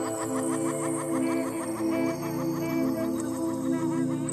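Background electronic music: sustained low tones under a fast, evenly spaced run of short chirping notes, about six a second, that fades near the end.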